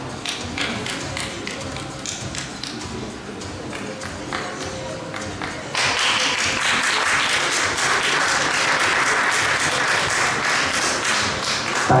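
Audience hand-clapping: a few scattered claps at first, swelling about six seconds in into steady, dense applause.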